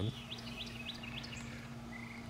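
A small bird chirping, about five short rising chirps in the first second and a half, over a steady low hum and outdoor background noise.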